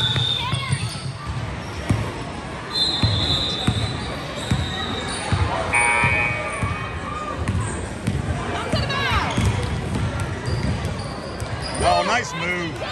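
Basketball dribbled on a hardwood gym floor, a run of low thumps, with sneakers squeaking on the boards, most plainly about nine seconds in. Voices carry through a large echoing hall.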